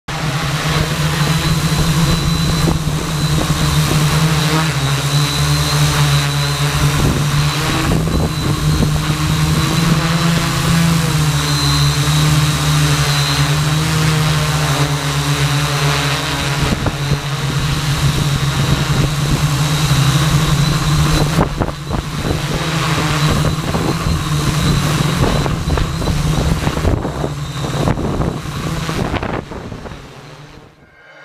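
Quadcopter's electric motors and propellers buzzing steadily as heard from a camera on board, with a rush of air noise and small shifts in motor pitch as the craft manoeuvres. The sound fades out at the very end.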